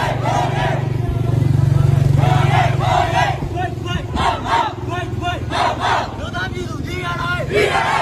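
A group of protesters shouting slogans together in short, repeated shouts, over the steady low hum of an idling vehicle engine.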